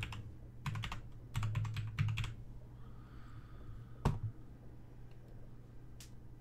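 Computer keyboard typing: two short runs of keystrokes entering a password, then a single louder click about four seconds in, over a steady low hum.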